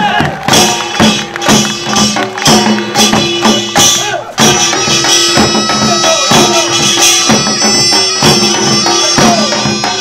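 Korean pungmul folk ensemble playing: janggu and buk drums beating a steady rhythm with a wind instrument playing held notes over them. From about four seconds in, the wind melody becomes continuous and fuller.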